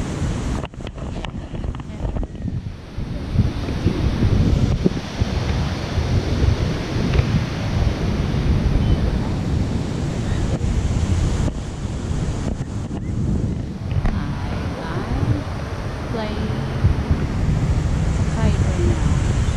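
Wind buffeting the camera microphone in uneven gusts over the steady wash of ocean surf, with faint voices near the end.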